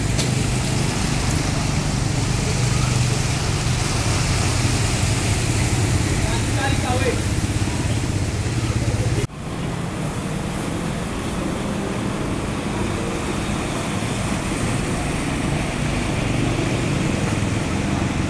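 Motorcycle engines running as the bikes ride through street flood water, with water splashing and a steady wash of traffic noise. About nine seconds in the sound breaks off sharply, then carries on much the same.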